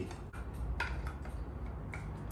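A few separate light plastic clicks and taps as a filter is fitted into a robot vacuum's plastic dust bin, over a low steady hum.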